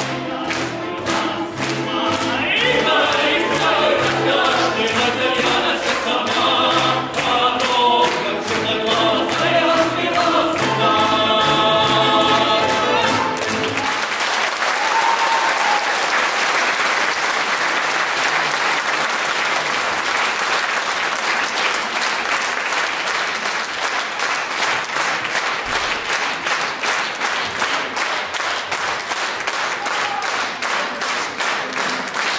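Male vocal ensemble singing in harmony with folk-instrument accompaniment of bayan and balalaikas, closing on a final chord about 13 seconds in. Audience applause follows for the rest of the time.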